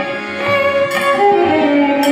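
Devotional kirtan music in raga Asa Bhairavi: a harmonium and a violin carrying a sustained, gently gliding melody. Hand cymbals (kartal) strike at the start and about a second in, roughly once a second.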